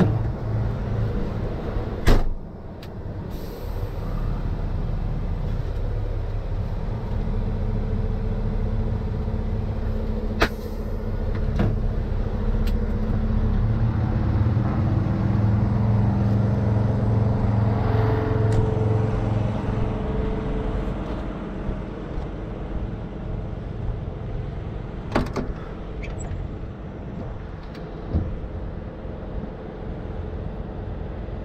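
Rotator wrecker's diesel engine idling steadily, its note getting louder for several seconds midway through. A loud bang about two seconds in and a few sharper clicks and knocks later.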